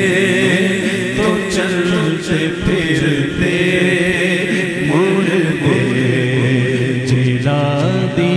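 Unaccompanied vocal chanting of a naat: long, wavering held notes over a steady drone of voices.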